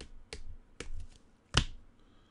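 Trading cards being handled by gloved hands: a few sharp clicks and taps, the loudest about a second and a half in.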